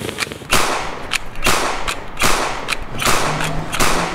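A handgun fired round after round in quick succession, about two shots a second, each with an echoing tail, as the pistol's magazine is emptied.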